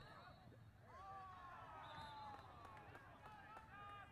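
Near silence with faint, distant voices calling out across a playing field, including one long drawn-out call that starts about a second in and slowly falls in pitch.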